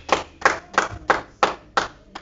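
Hands clapping in a steady rhythm, about three claps a second, six claps in all.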